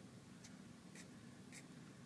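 Near silence inside a car cabin: a faint steady low hum with three faint short ticks about half a second apart.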